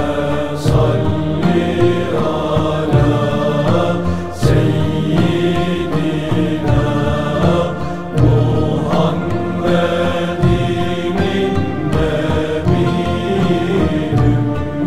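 Turkish ilahi (Islamic devotional song) music: chant-like voices over instrumental accompaniment, with a few short percussive strikes.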